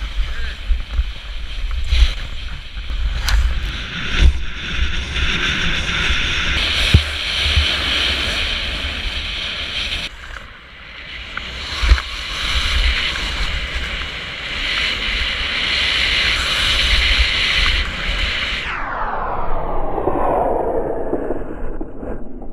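Skis hissing and scraping over snow while skiing downhill, with wind buffeting the helmet-camera microphone in gusts and occasional knocks. The sound changes sharply about ten seconds in, and near the end a long sweep falls steadily in pitch.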